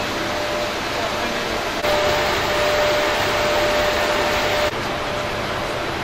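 Steady machinery noise in a hydroelectric power station hall, with a constant hum. It grows louder about two seconds in and drops back abruptly near the end.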